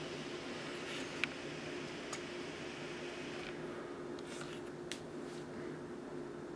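Steady low room hum with a constant faint tone, broken by a few small, faint clicks.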